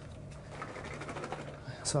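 Quiet kitchen sounds: faint light clicks and rustles as a small container of washed blueberries is picked up from beside the sink, over a low steady hum.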